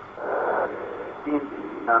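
Speech only: a man's voice on a radio broadcast, narrow and thin as over a telephone line, with a breathy hiss before he starts to talk near the end.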